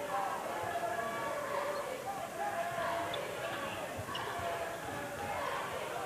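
Crowd noise in a basketball arena, many voices at once, with a basketball bouncing on the hardwood court during play.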